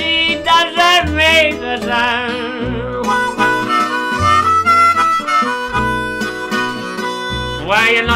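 Acoustic blues band playing: a harmonica solo, played with cupped hands, over two acoustic guitars and an upright double bass.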